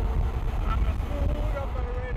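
Outdoor road sound while riding: a steady low rumble of wind and road noise, with faint talk in the background.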